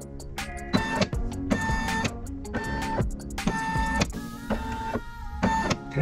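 Brother SE1900 embroidery unit moving the hoop in short runs, with a steady motor whine about once a second, as it traces the outline of the design to check that it fits in the hoop. Background music plays underneath.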